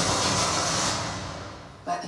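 Movie-trailer sound effect: a loud rushing whoosh that fades away over the second half, followed by a short sharp hit just before the end.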